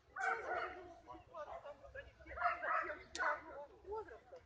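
A dog barking among people talking in the background, with one sharp crack a little after three seconds in.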